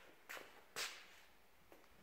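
Near silence with two soft, brief rustles in the first second, like clothing or handling noise.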